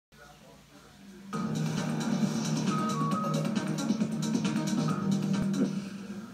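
Television news music with a quick percussive beat, heard through a TV's speaker. It starts about a second in and fades out near the end.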